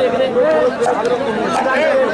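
Crowd of spectators chattering: many men's voices talking over one another without pause, one voice standing out above the rest.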